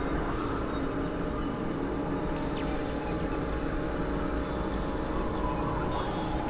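Dense experimental electronic drone music: a steady low rumble under many held tones, with a bright, high, shimmering layer entering about two and a half seconds in and more high tones joining later.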